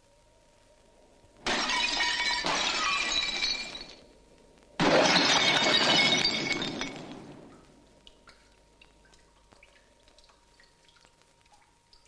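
Glass smashing twice, about three seconds apart: each crash starts suddenly and rings on as the shards fall for two to three seconds. Scattered small tinkles of settling pieces follow.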